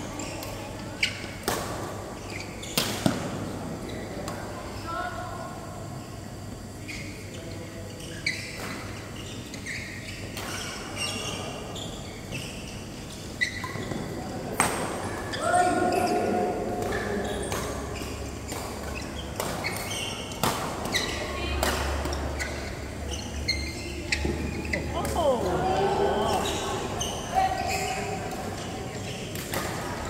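Badminton rally: sharp racket strikes on the shuttlecock at irregular intervals, roughly one every second or so, with players' voices and calls in between.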